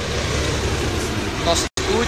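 Steady low rumble of road vehicles and traffic noise beside a highway. The sound cuts out completely for a split second near the end.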